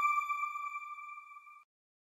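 A single bright chime note from a TV channel's closing ident, ringing with overtones and fading away, gone about a second and a half in.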